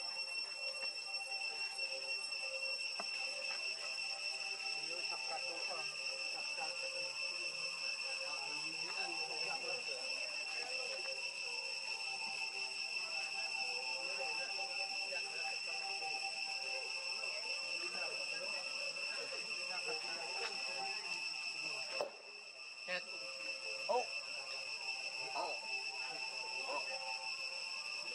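Steady, high-pitched drone of insects, with faint voices murmuring underneath. About three-quarters through, a sharp click comes with a brief dip in the drone, and another click follows a couple of seconds later.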